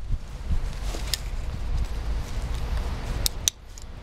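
A few sharp clicks of harness straps and buckles being adjusted on a backpack rig, over a steady low rumble. Two of the clicks come close together late on.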